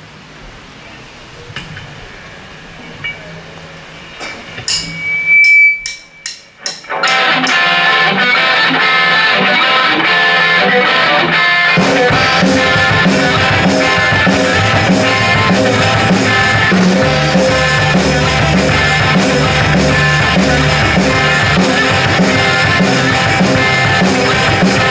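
Live rock band with electric guitars, bass guitar and drum kit starting a song: after a quiet stretch, a short run of evenly spaced sharp clicks, then the guitars come in about seven seconds in and the bass and drums join about twelve seconds in, playing steadily on.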